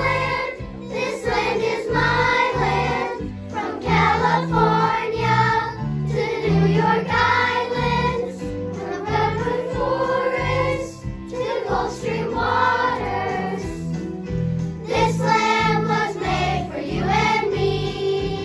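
Children's choir singing in unison over an instrumental backing track with a steady bass line.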